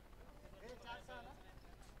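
Near silence with faint, distant talking about half a second to a second and a half in.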